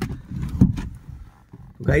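A sharp click, then a few dull low knocks and rustling from handling inside a car cabin. A man starts speaking near the end.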